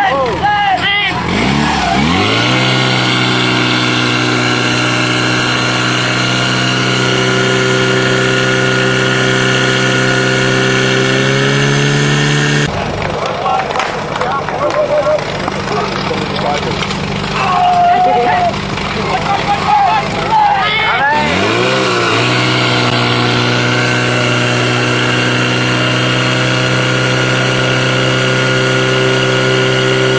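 Portable fire pump engine revved up sharply from low speed and held at high, steady revs, pumping water out through the attack hoses. Partway through it gives way for several seconds to a mix of noise and shouting, then an engine revs up sharply again and runs at full speed.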